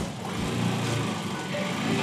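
Motorcycle tricycle (a motorcycle with a passenger sidecar) running at low speed as it rolls slowly along, a steady engine rumble, with music faintly underneath.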